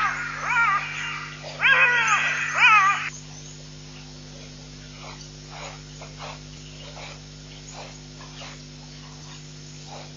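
A run of high-pitched, whining animal calls, each falling in pitch, in the first three seconds, followed by faint, short calls repeated at intervals.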